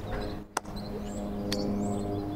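A coin tossed and caught: two sharp clicks about a second apart, over a steady held low musical tone.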